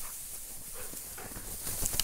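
Tall dry grass rustling and crackling as dogs move through it at close range.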